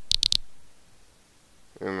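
Three quick computer mouse clicks in the first half-second, then a word of speech near the end.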